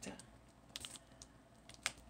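A few faint clicks and taps, with one sharper click near the end, from a flat gift in its sleeve being handled and lifted.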